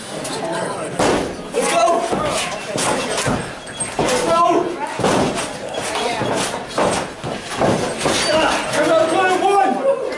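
Several sharp slaps and thuds of professional wrestlers striking each other and hitting the ring, about one every second or so, over continuous crowd shouting and voices.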